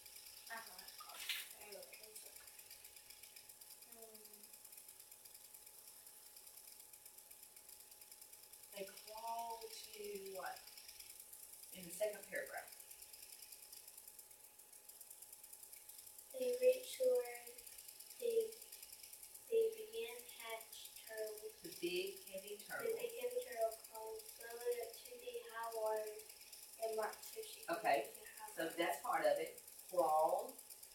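Quiet, indistinct speech from across a small room: two voices talking in low tones, with long pauses early on and more steady talk in the second half, over a faint steady tone.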